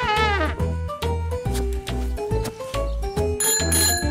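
Playful background music: melodic notes over a steady, bouncing bass pulse. It opens with the tail of a wavering, warbling pitched sound, and a short high, bell-like ringing comes shortly before the end.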